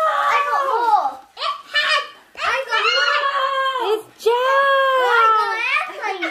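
Excited high-pitched children's voices, squealing and exclaiming in short bursts with brief pauses.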